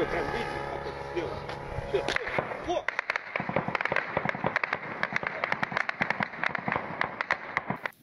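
Voices for the first few seconds, then from about three seconds in a long, rapid run of sharp cracks, several a second, that stops just before the end: gunfire during a drone attack.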